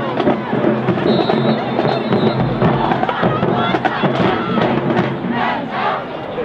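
Marching band of brass, sousaphones and drums playing while a stadium crowd cheers; the music gives way to crowd cheering and shouts near the end.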